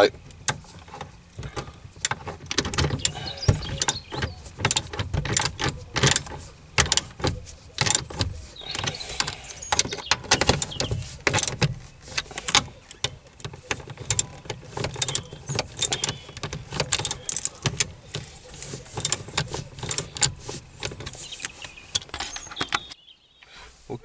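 Socket ratchet clicking in rapid, irregular runs as the bolts of a short shifter's base are snugged down on a car's gear-shift mechanism, stopping abruptly near the end.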